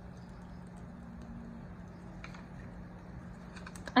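A few light clicks and taps of hands handling a plastic-backed sheet of enamel dot stickers and paper cards, over a steady low hum.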